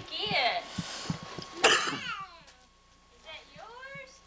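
Young children's wordless voices, with small knocks and rustling among the toys and gift boxes, and a sudden loud breathy burst a little under two seconds in; a rising child's call comes near the end.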